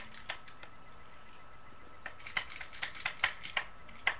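Kitchen tongs being snapped open and shut, giving sharp clicks: a few at the start, then a quick irregular run of several clicks a second through the second half.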